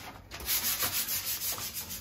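Sandpaper on a hand sanding pad rubbed back and forth over a painted or filled wall, a dry scratchy rasp in quick repeated strokes, about four or five a second, starting about a third of a second in.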